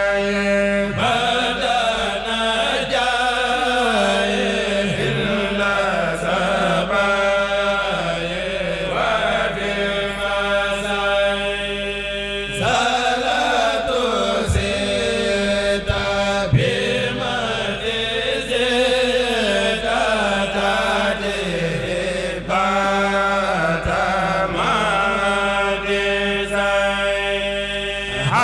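A kurel, a group of men's voices, chanting a Mouride khassida (religious poem) together into microphones, in long sung phrases with short breaks about twelve and twenty-two seconds in.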